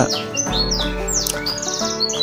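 Domestic canaries chirping with short, quick downward-sweeping calls and a rapid trill near the end, over background music of steady held notes.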